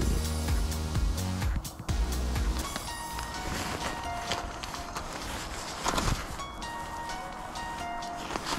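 Background music with several held tones, and scattered light clicks and knocks underneath.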